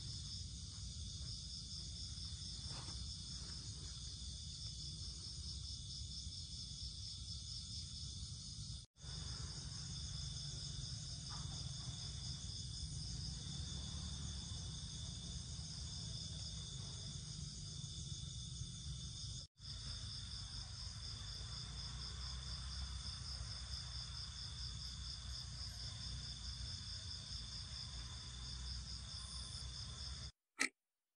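Night insects calling in a dense chorus: a steady high-pitched trilling with a fast, even pulse, over a low rumble. The sound breaks off for an instant twice, about nine and nineteen seconds in.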